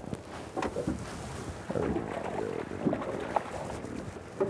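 Sounds from a drift boat on moving river water while a hooked fish is played beside the landing net: scattered sharp knocks against the boat over a steady water rush, with a few brief low pitched sounds.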